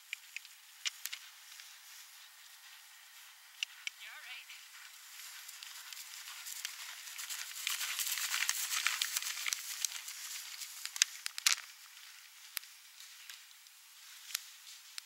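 A horse galloping past on grass: a rush of hoofbeats and rustling that swells to its loudest about eight seconds in, then fades. Sharp clicks and ticks are scattered throughout, the loudest a little after eleven seconds.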